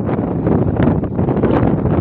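Wind buffeting the microphone: a loud, steady rumbling noise.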